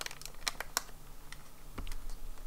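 Small rubber doll-shaped erasers being slid out of a clear plastic packet: light crinkling of the plastic and a scatter of small, soft clicks as the erasers knock together and against the fingers.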